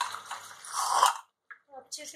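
Vegetables sizzling in hot oil in a non-stick pan, with a wooden spatula clicking and scraping against the pan as they are stirred. The sound swells briefly, then cuts off abruptly a little after a second in.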